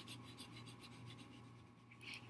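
Felt-tip marker scratching faintly on paper in quick back-and-forth coloring strokes.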